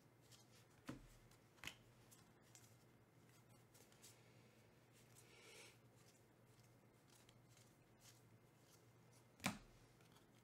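Faint handling of a stack of trading cards: cards flicked and slid from one hand to the other, giving a few short clicks (about a second in, just before two seconds, and a louder one near the end) and a soft rustle midway, over a low steady hum.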